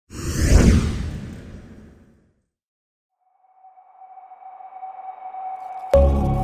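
Cinematic sound effects for a studio logo: a loud sweeping whoosh that fades over about two seconds, a second of silence, then a steady tone that swells louder and louder until a sharp hit near the end.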